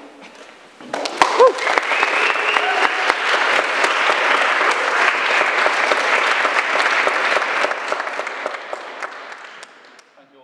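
Audience applauding. It starts about a second in after a short pause, then dies away over the last couple of seconds.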